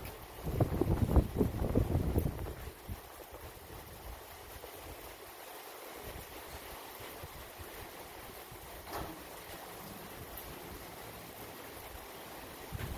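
Wind buffeting the microphone in loud, rough gusts for the first two seconds or so, then settling into a steady, even outdoor hiss.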